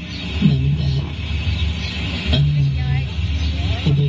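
A woman crying, her voice rising and holding in short wavering sobs, over a steady low hum.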